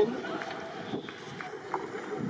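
Faint, indistinct talking near the camera over steady outdoor background noise, with a few soft scattered knocks.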